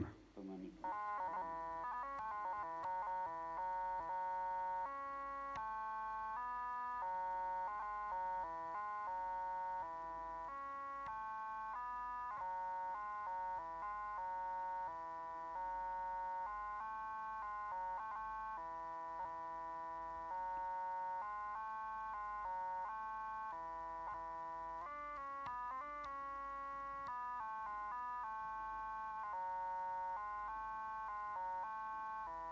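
Electronic kaba gaida (Bulgarian bagpipe chanter) playing a simple children's melody as a steady string of distinct, evenly loud synthesized notes.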